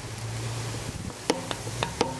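A few light metallic clicks, about four in the second half, from a hand working at the bolted steel thrust-bearing cover plate of an industrial compressor gearbox, over a steady low hum.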